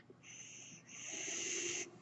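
Mechanical ventilator pushing a breath: a faint hiss of air, a short puff first and then a longer, stronger one with a low tone beneath it, stopping just before the talk resumes.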